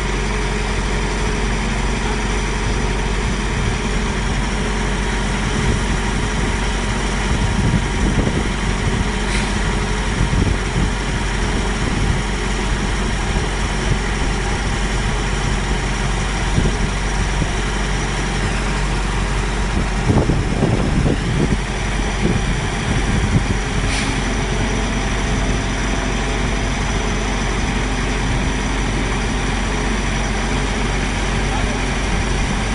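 Mobile crane's diesel engine running steadily as it hoists a load, with brief louder rumbles about eight and twenty seconds in.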